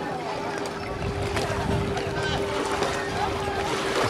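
Voices and chatter with music playing for dancing underneath, and a steady low hum throughout.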